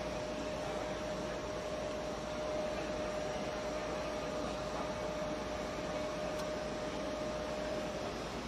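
Electronic crockmeter running a colour-fastness-to-rubbing test, its drive motor giving a steady whine that cuts off just before the end as the run finishes.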